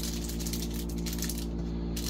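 Steady low hum of a running room air conditioner, with faint light rustles and clicks from small parts being handled.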